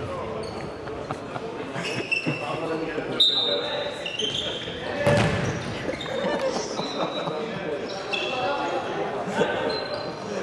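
Futsal play on a wooden sports-hall floor: sneakers squeak in short, high chirps while players shout to each other and the ball is kicked and bounces on the boards. A heavy thump comes about five seconds in.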